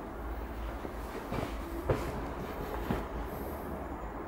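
Steady low background rumble with a few light clicks, about a second and a half, two and three seconds in.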